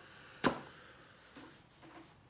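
A single sharp tap of a small object set down on a tabletop, about half a second in, followed by faint handling noise.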